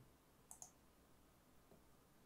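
A computer mouse button clicking twice in quick succession, faint, about half a second in, against near silence.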